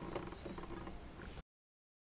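Faint clicks and rubbing of a fretting hand's fingers on an acoustic guitar's strings and neck, with no notes played. It cuts off to silence about one and a half seconds in.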